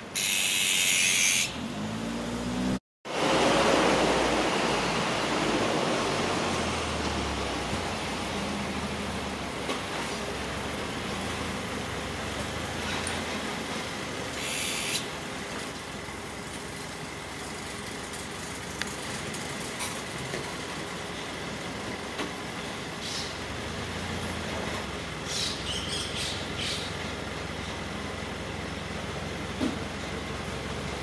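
Steady background hum of distant city traffic, with a loud harsh bird call lasting about a second and a half at the start and a few shorter harsh calls around the middle and two-thirds of the way through. The sound cuts out briefly about three seconds in.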